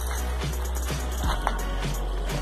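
Background music with a steady beat over a sustained bass line.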